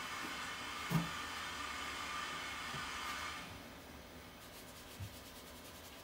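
Kitchen tap water running into a stainless steel sink as a plastic cup is rinsed under it, the hiss dropping away about three and a half seconds in. A light knock about a second in and a softer one near the end, the cup touching the sink.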